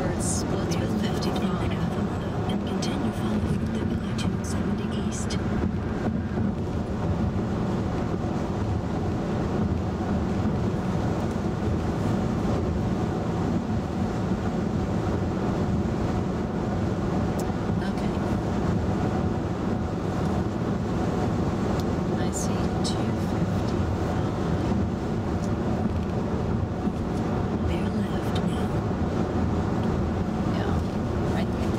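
Steady road and tyre noise inside the cabin of a 2011 VW Tiguan SEL 4Motion cruising at highway speed, an even hum with no sudden events.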